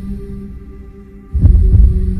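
Music intro: a low sustained drone fades, then two deep bass thumps land in quick succession about a second and a half in.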